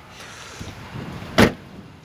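Door of a 2008 Ford Explorer Sport Trac shut once: a single short thud about one and a half seconds in.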